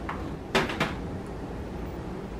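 Perforated cardboard door of a chocolate advent calendar being pushed in and torn open: two short sharp snaps about a quarter second apart.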